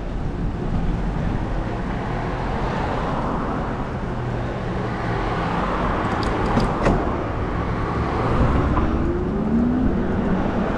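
Steady rush of road and wind noise from riding a bicycle on a road with motor traffic. There are a few sharp clicks about six to seven seconds in, and a vehicle's engine note rises in pitch near the end.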